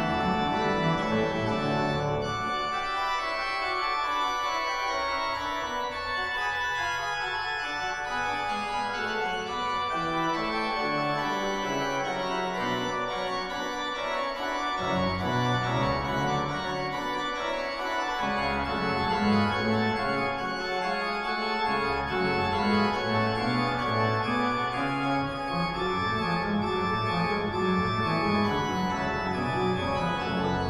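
Pipe organ playing a Baroque piece without pause, with several voices on the manuals over a pedal bass line that moves from note to note in the low register.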